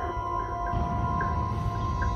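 Background film score: long held notes over a low drone that swells about a third of the way in.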